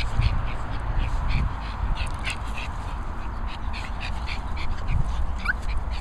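Small dogs, a Yorkshire terrier and a Bichon, playing on grass under a steady wind rumble on the microphone. There are short high scratchy sounds at irregular spacing throughout and a brief rising whine near the end.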